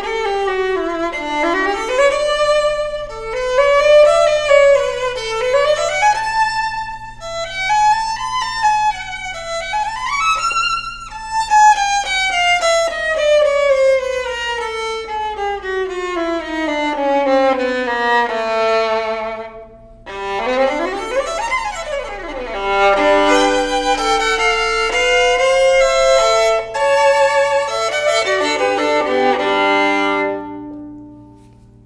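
Fiddlerman Soloist violin played solo with the bow: rising and falling melodic phrases, then a long smooth falling line down to the low strings. About twenty seconds in comes a quick slide up and back down, followed by double stops and chords that ring out at the end.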